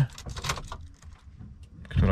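A few faint, scattered clicks and rustles of small objects being handled in a truck cab, fading out in the second half.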